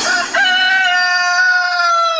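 A rooster crowing: one long drawn-out note, starting about a third of a second in and falling slightly at its end, heard alone after the dance music cuts out.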